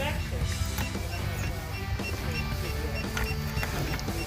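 A Geotab GO9 Rugged GPS tracker beeping in short, high, evenly repeated beeps while it boots up and acquires its signal, over a steady low hum and a few light clicks of wiring being handled.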